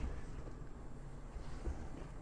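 Hands working through damp peat moss and vermiculite casing mix in a plastic tub: a faint, soft rustle of the moist mix with two low thumps, one at the start and one near the end.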